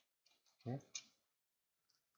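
A man's voice saying the single word "click" once, softly, with a brief sharp tick at the very start and near silence around it.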